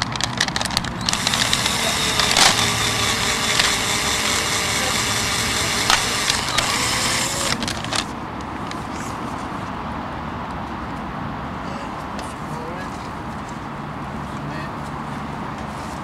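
Black & Decker cordless drill running for about six seconds, boring into a wooden plaque held against a wooden tree stake, then stopping; fainter handling knocks follow.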